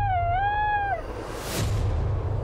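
A gray wolf howls once, a single fairly level call with a dip in pitch partway through, ending about a second in. A rising whoosh follows over a low steady drone.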